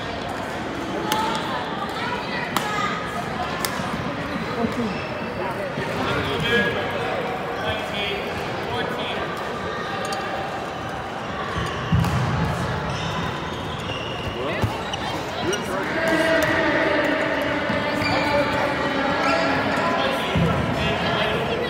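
Badminton rally: rackets striking the shuttlecock in sharp cracks, roughly one a second, with a heavy thump about twelve seconds in, over steady hall chatter. Voices grow louder near the end.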